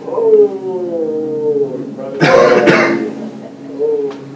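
A person's voice held in one long call that falls in pitch, then a loud, harsh vocal burst a little over two seconds in, and a short call near the end.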